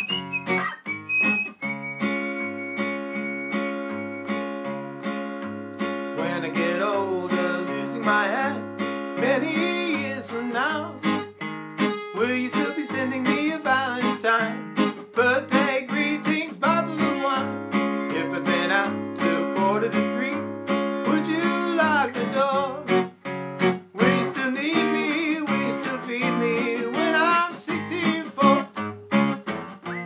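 Takamine steel-string acoustic guitar strummed in a steady rhythm with a man singing over it from about six seconds in. Before the singing, a few held high notes sound over the strumming, like whistling.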